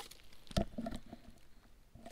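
Faint rustling and a few light crackles, mostly in the first second, as a knit-gloved hand sifts crumbled pieces of wax among paper and plastic trash bags.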